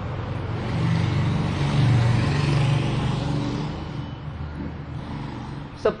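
A motor vehicle passing by. A low engine hum and a rushing noise swell to a peak about two seconds in, then slowly fade.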